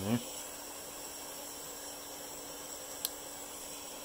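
Steady hiss of a lit butane soldering iron, with one short click about three seconds in.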